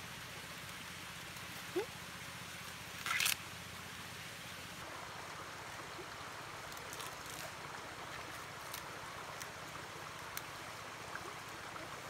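Steady outdoor background hiss, with one short loud rustle about three seconds in and a few faint clicks later on.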